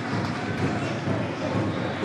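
Football stadium crowd: many voices at once in a steady, dense din.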